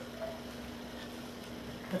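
Quiet indoor room sound with a steady low electrical-type hum and no distinct events.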